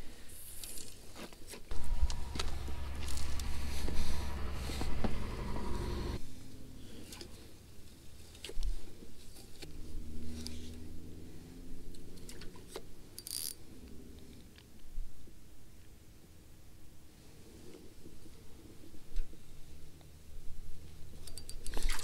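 Spinning reel being cranked to reel in a cast lure: a steady whirring for about four seconds starting a couple of seconds in, then slower, quieter cranking later on, amid small clicks and rattles of handling the rod and reel.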